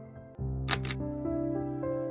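Soft background music with sustained notes. About two-thirds of a second in, a quick double click sounds: a mouse-click sound effect as an on-screen subscribe button is pressed.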